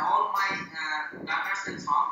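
Speech only: a person talking steadily over a video-call connection.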